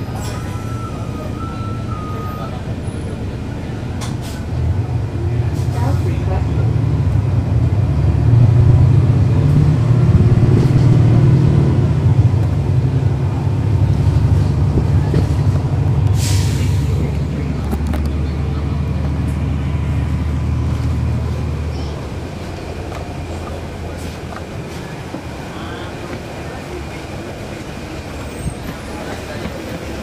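Cummins ISL9 diesel engine of a 2011 NABI 40-foot transit bus pulling away: its note builds a few seconds in, runs hardest for several seconds and steps as the automatic transmission shifts up, then eases off about two-thirds of the way through. A short hiss of air comes about halfway through.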